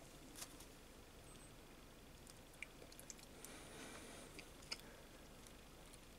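Near silence, with a few faint light clicks and a soft rustle from fingers handling the small spring, carbon brush and plastic brush holder in the opened mini drill's housing.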